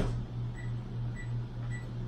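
Microwave oven keypad beeping three times, short high beeps about half a second apart, over a steady low hum.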